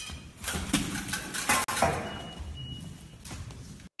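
Mashed potatoes being thrown and splattering against a glass-covered painting, heard in news footage: an irregular clatter with several sharp knocks. A thin high tone sounds from about halfway through.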